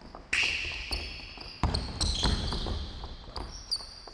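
Basketball shoes squeaking sharply on a hardwood court as players move, with a basketball bouncing on the floor a few times as the offensive player dribbles.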